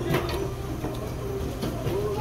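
Steady low background hum of a store interior, with a few faint clicks.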